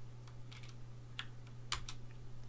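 Light computer-keyboard keystrokes: a handful of separate key clicks, two in quick succession near the end, as a terminal command is entered. A low steady hum runs underneath.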